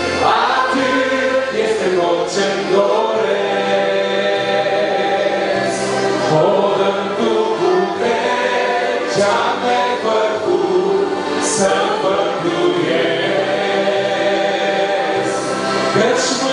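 A church congregation singing a Romanian Christian hymn together, with the singing going on without a break.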